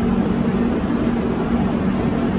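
Steady low hum of a passenger train standing at a station platform, its engine or generator idling with an even mechanical drone.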